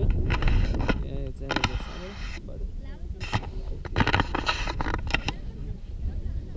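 Voices talking close by, with wind buffeting the microphone as a low rumble, strongest in the first second. Several short hissing rustles come through between the words.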